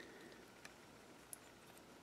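Near silence with three faint, short clicks of plastic parts as the arms of an X-Transbots Krank transforming robot figure are pulled out into place.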